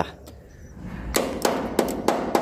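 Metal scraper knocking and clinking against a swiftlet nest and the wooden plank it is stuck to, while the nest is pried loose. There is one sharp knock at the start, then a quick run of clinking knocks in the second half.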